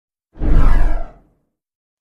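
A single deep whoosh sound effect for an animated logo intro. It swells up about a third of a second in and fades out within a second.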